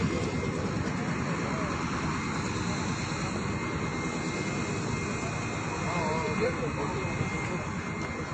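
Small portable generators running with a steady engine drone. Faint voices can be heard behind it about six seconds in.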